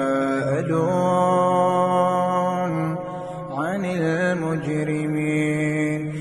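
A man's voice reciting the Quran in melodic tajweed style, holding long steady notes, with a rising-and-falling glide in pitch about halfway through.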